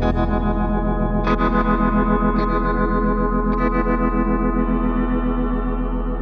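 Instrumental ambient music: electric guitar run through chorus, distortion and echo effects, sustained chords struck anew about once a second for the first few seconds, over a steady low drone, the loudness pulsing quickly throughout.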